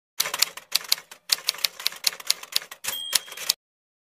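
Typing sound effect: quick runs of key clacks with short pauses, as if text is being typed into a search box. There is a brief high ring shortly before the last keystrokes, and the typing cuts off suddenly about three and a half seconds in.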